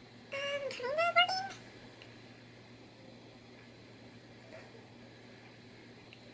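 A cat meowing once: a single call of just over a second, a little way in, that dips and then rises in pitch.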